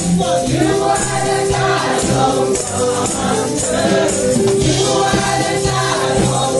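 Praise and worship song: women singing through microphones over instrumental accompaniment with a sustained bass line.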